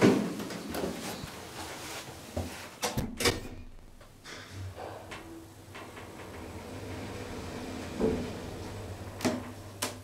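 Passenger elevator in motion: a few sharp mechanical clunks and clicks about three seconds in, then a steady low hum from the drive as the car travels down one floor, with more clicks near the end.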